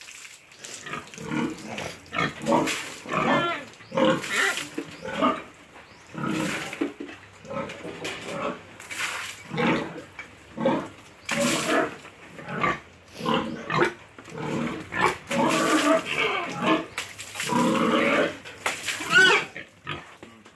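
Domestic pig calling over and over, about one call a second: short low grunts, with some longer, higher-pitched calls in the second half.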